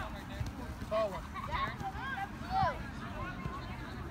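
Indistinct children's voices calling out in short, high-pitched bursts, with a steady low rumble underneath.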